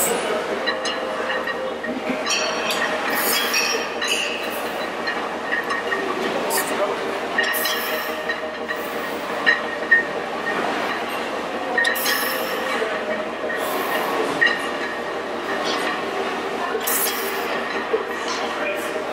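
Busy weight-room noise during a heavy barbell back squat set: steady background clamour with voices and a few short sharp knocks or clanks scattered through.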